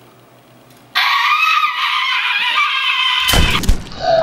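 A person's high-pitched scream that starts suddenly about a second in and is held for about two and a half seconds, with heavy thumps near the end.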